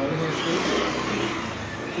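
A motor vehicle passing on the road: engine and tyre noise swell and then fade over about a second and a half.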